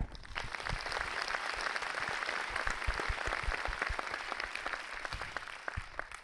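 Audience applauding: a dense patter of many hands clapping that starts suddenly, holds steady and eases slightly near the end.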